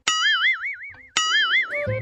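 A cartoon 'boing' comedy sound effect played twice, about a second apart. Each starts sharply as a twanging tone whose pitch wobbles up and down several times a second as it fades.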